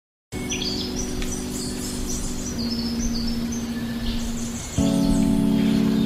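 Music intro in which chirping birdsong sits over a held, steady chord; a fuller, louder chord comes in near the end.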